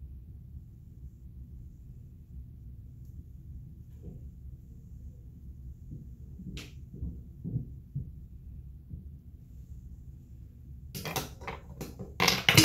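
Quiet room hum with soft handling sounds of makeup items: a few light knocks, one sharp click about halfway through, then a quick run of louder clicks and clatter near the end.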